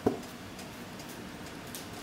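A single short knock right at the start, then a low, steady background hiss.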